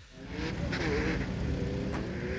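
A car engine running hard under acceleration on a drag strip. It swells in over the first half second and then holds a fairly steady note, with a hiss of air and tyres over it.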